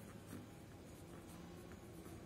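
Faint scratching of a wooden pencil writing a word on a textbook page.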